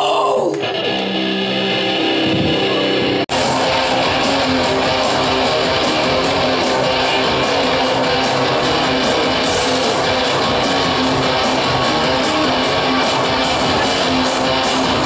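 Live industrial metal band playing through a club PA: after a few seconds of sparser held tones, the full band cuts in suddenly about three seconds in with heavy distorted electric guitars and keeps going loud and dense.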